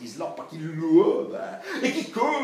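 A man's voice making wordless vocal sounds as part of a sound-poetry performance, the pitch sliding up and down and growing louder about a second in.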